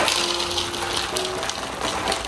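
Dry breakfast cereal poured into a bowl, a steady rattling rush of pieces landing.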